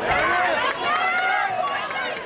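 Several voices shouting and calling out over one another during a soccer game in progress.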